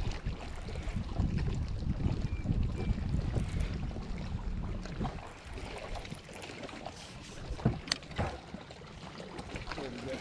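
Wind buffeting the microphone with a choppy low rumble that eases off about halfway through. A few sharp clicks and knocks from the baitcasting rod and reel being handled come near the end.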